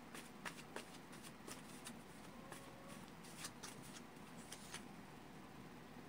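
A deck of cards being shuffled by hand, heard as faint, irregular soft flicks and clicks.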